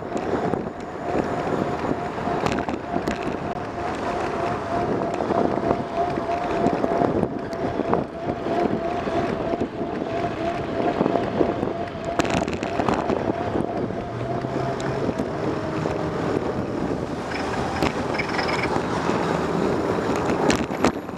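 Wind buffeting the microphone of a camera mounted on a moving bicycle, over rolling road noise, with scattered knocks from the ride. A faint steady whine runs through the first two-thirds and then fades out.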